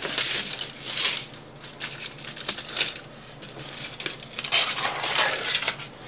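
Aluminum foil being cut and handled: an irregular run of crackles and rustles, with a short lull about three seconds in.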